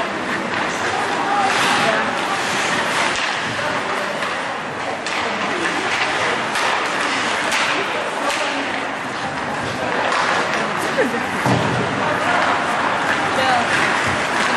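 Ice hockey play in an indoor rink: skates on the ice and sticks and puck knocking, with scattered sharp thuds against the boards, under spectators' indistinct chatter.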